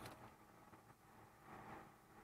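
Near silence, with a faint soft plastic scrape about a second and a half in as the staple cartridge is slid out of the office finisher's stapler.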